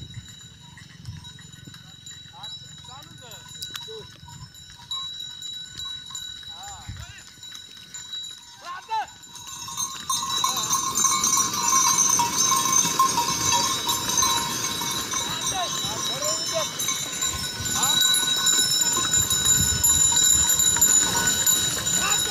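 Sugarcane-laden bullock carts going by, the bullocks' neck bells ringing over the rumble of the carts. It gets louder about ten seconds in as a cart passes close.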